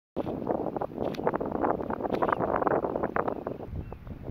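Wind buffeting the microphone: loud, gusty crackling rumble that eases off near the end.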